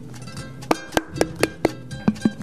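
Small wooden paddle slapping the outside of a leather-hard clay pot held against a stone inside, the paddle-and-anvil method used to thin and smooth the vessel wall: five quick slaps in the second half, over background music with a plucked string instrument.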